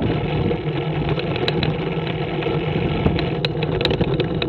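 A Scorpion trike's engine running steadily while riding along at road speed, with road and wind noise and a few sharp clicks in the second half.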